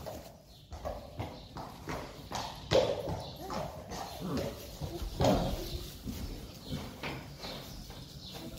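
Friesian horses moving about in a stable: irregular hoof knocks and shuffling on the floor, with short horse sounds in between.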